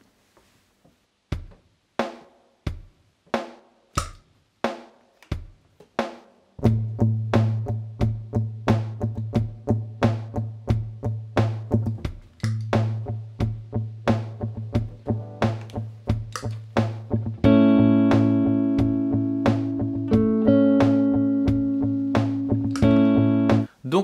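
Loop-pedal drum beat, joined after about six seconds by an electric guitar (Fender Stratocaster) picking a steady, repeated low A pedal note. An A major chord rings in over it for the last six seconds or so.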